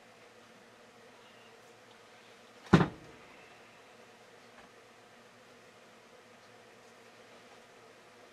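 One sharp, heavy knock a little under three seconds in, typical of a metal sawmill part (the edger shaft with its pulley) being set down on the steel-topped workbench, over a faint steady hum.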